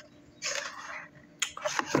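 Handling of a plastic barbell clamp: a short hiss of rustling or breath, then a sharp click about one and a half seconds in.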